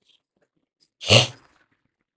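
A man's single short vocal burst, a sharp explosive breath from the mouth, about a second in.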